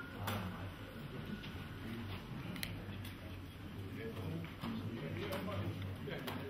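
Faint murmur of voices in a room over a steady low hum, with a few sharp clicks: one near the start, one in the middle and one near the end.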